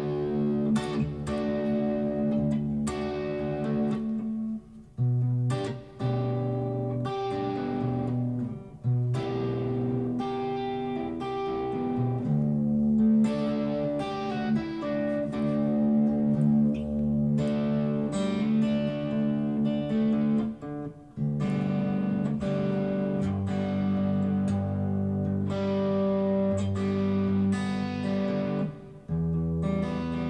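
Electric guitar in drop D tuning playing a string of chords, each plucked and left to ring. The chords change every second or two, with a few brief breaks between them.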